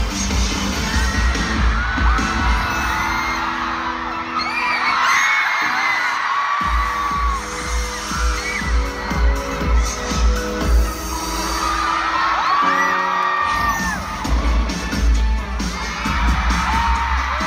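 Pop music with a heavy, pulsing bass beat played loud in a concert hall, with a crowd's high screams rising and falling over it. The beat drops out briefly about five and a half seconds in and again near thirteen seconds.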